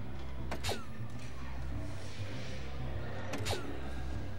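Two soft-tip darts hitting an electronic darts machine, about three seconds apart. Each hit is a sharp click followed by the machine's falling electronic hit tone, over a steady low hum.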